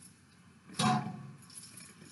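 A single short clink of a hair clip being handled, about a second in.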